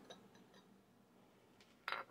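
Mostly quiet handling of a stoneware fermentation crock, with a few faint clicks, then a single sharp clink of a small glass against the crock near the end.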